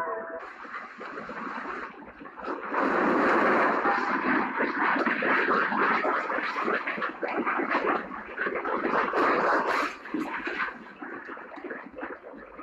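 Loud, dense rattling and clattering as buildings and objects shake in an earthquake. It swells about three seconds in and eases near the end.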